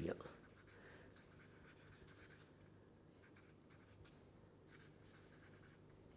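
Faint scratching of a felt-tip marker writing on paper, in a few short runs of strokes with brief pauses between them.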